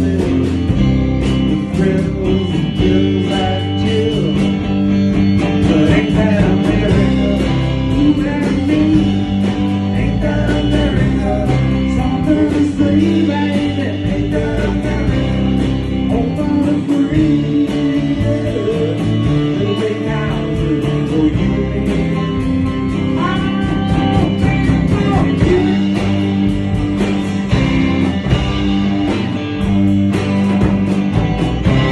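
Small band playing a rock tune on amplified electric guitars, a rhythm part under lead lines, with a few bent notes about two-thirds of the way through.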